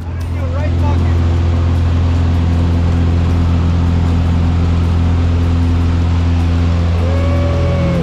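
Single-engine propeller aircraft running at high power, heard inside the cabin as a loud, steady low drone that builds over the first second and then holds level.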